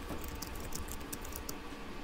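Typing on a computer keyboard: a quick, irregular run of keystroke clicks as a line of notes is typed.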